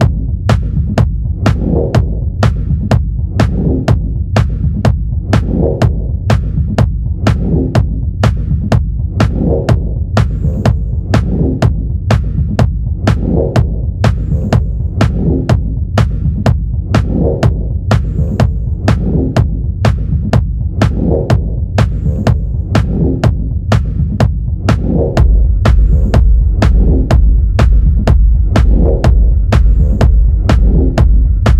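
Techno track: an even beat of sharp hits about two a second over a throbbing, humming loop. About 25 seconds in a deep bass comes in, the track gets louder and a few high held tones join.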